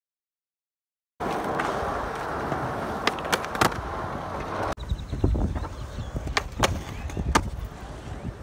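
Skateboard wheels rolling over a concrete skatepark surface, with several sharp clacks of the board. It starts abruptly after a second of silence and cuts about halfway through to another stretch of rolling with more clacks.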